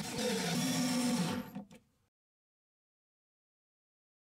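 Cordless drill running steadily for about a second and a half, pre-drilling a pilot hole through a piano hinge into a wooden lid, then stopping.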